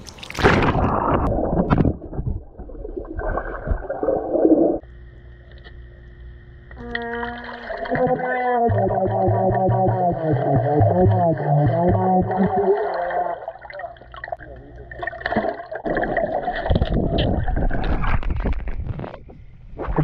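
Plastic trombone (pBone) blown underwater and heard through the water: a muffled, warbling brass tone that wavers and breaks in pitch, which the player puts down to bubbles disrupting the pocket of air at the front of the bell. Loud splashing comes before and after, as the player goes under and comes back up.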